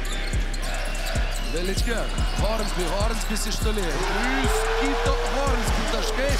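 Basketball dribbled on a hardwood court, a bounce roughly every half second, with shoe squeaks from players cutting on the floor.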